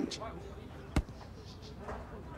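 A single sharp thud about a second in: a football being kicked, over faint outdoor background noise.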